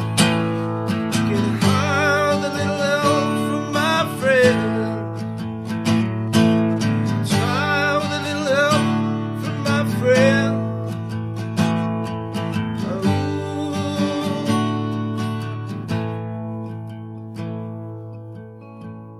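Acoustic guitar strummed, with a man's voice singing long, wavering held notes over it. Near the end the strumming eases and the guitar rings down.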